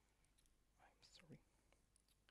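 Near silence, with a brief faint murmur of a man's voice about a second in and a few faint clicks.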